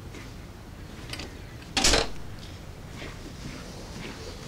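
A door shutting with a single short, loud thud about two seconds in, with a few faint taps around it.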